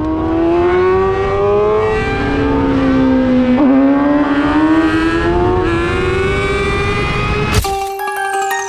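Sportbike inline-four engine accelerating hard down a straight, pitch climbing steadily with one gear change about three and a half seconds in, then climbing again. It cuts off suddenly with a click near the end, where music begins.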